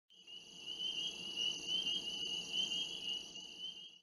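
Insect chorus: a steady, high-pitched, warbling trill that fades in at the start and swells and eases every half second or so.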